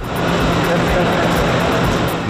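A loud, steady rushing whoosh with a low hum underneath, starting suddenly: the transition sound effect of a TV news bulletin's section graphic. A faint electronic beat continues under it.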